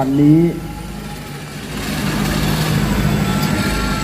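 Race pickup truck engines running as the trucks roll slowly forward, the engine sound growing louder from about two seconds in.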